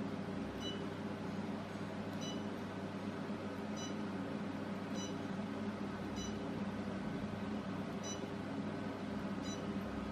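SHR/IPL beauty machine humming steadily from its cooling system, with a short electronic beep at each light pulse fired from the handpiece: seven beeps, roughly one every second and a half.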